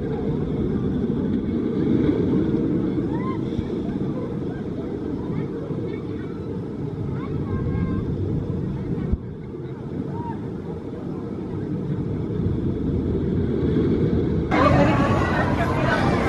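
Steady low rumble of a steel roller coaster car running along its track, with faint voices. About a second and a half before the end the sound suddenly becomes fuller and brighter, and riders' voices come through more clearly.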